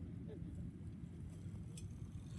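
Steady low wind rumble on the microphone, with faint distant voices and a few light clicks in the second half.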